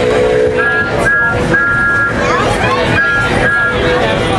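Running noise inside a moving passenger train coach. A high two-note tone sounds in short blasts, three in the first half and two more near the end, with voices in the car.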